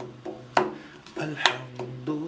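A hand tapping a beat on furniture as unplugged hand percussion for a song: two strong knocks about a second apart, with lighter taps between. Under them runs a low wordless hum whose pitch steps once near the middle.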